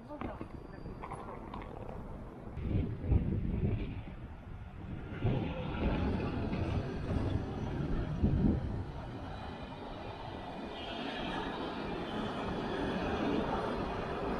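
Wind buffeting the microphone with a few loud thumps while moving, then a freight train rolling past over a level crossing, its wheels on the rails making a steady noise that grows slowly louder toward the end.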